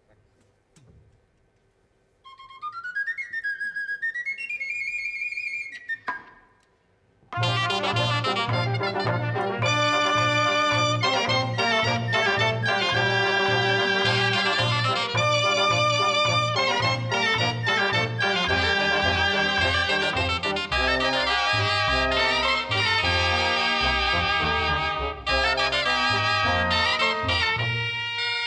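A cobla begins a sardana. After a brief hush, a high solo flabiol plays the short introduction. About seven seconds in, the full cobla comes in loudly and plays on with a steady bass pulse: tibles, tenoras, trumpets, trombone, fiscorns and double bass.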